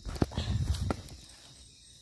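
Footsteps scuffing down a steep dirt trail covered in dry leaves, with two sharp clicks in the first second.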